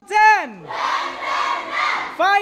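A loud single call that slides down in pitch, followed by a group of children shouting and yelling together.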